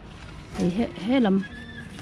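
Speech: a woman talking, starting about half a second in.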